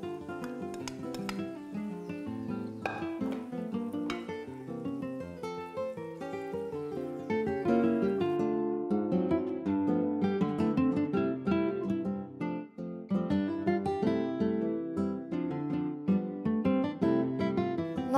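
Background music: an acoustic guitar playing a plucked and strummed tune.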